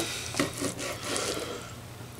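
Long slicing knife sawing through the crusty bark and tender meat of a smoked brisket in a few scraping strokes, its blade rubbing on the wooden cutting board.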